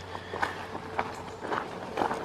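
Footsteps on a gravel path, crunching at a steady walking pace of about two steps a second.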